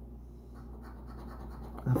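A coin scraping the coating off a scratch-off lottery ticket: a quiet run of short scratching strokes from about half a second in.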